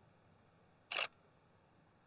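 Nikon D5600 DSLR taking a single shot: one quick shutter-and-mirror click about a second in.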